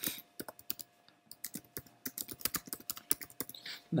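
Typing on a computer keyboard: a string of quick, irregular key clicks. There is a short break about a second in, then a faster, denser run of keystrokes.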